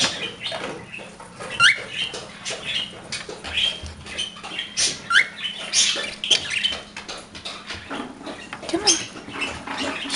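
Pet cockatiels and a budgie chirping and chattering in short, quick chirps, some sliding up in pitch, mixed with scattered light clicks.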